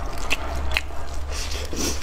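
Close-miked chewing and biting of braised pork meat torn from the bone, wet and sticky mouth sounds with a few sharp clicks.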